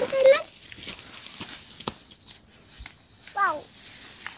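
Cassava leaves being picked and pushed into a plastic bag: rustling of leaves and plastic with a few sharp snaps of leaf stalks.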